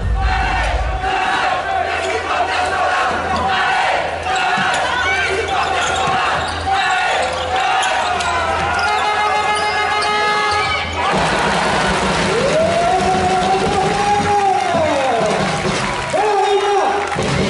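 A handball being bounced on a wooden indoor court during play, with crowd voices and held, pitched tones in a large sports hall; one long tone rises and falls near the end.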